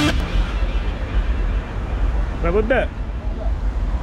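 Roadside background noise: a steady low rumble of traffic, with a short burst of speech about two and a half seconds in.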